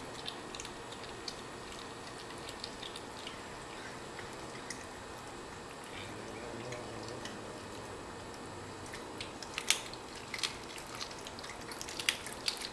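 A cat chewing raw quail, crunching the bones with scattered wet clicks and snaps, a few louder crunches near the end.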